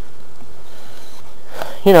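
A short pause in a man's talk: faint steady background noise with a thin steady hum, and a breath just before his voice resumes near the end.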